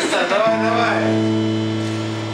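A few spoken words, then about half a second in an electric guitar sounds one low note that rings on steadily through the amplifier.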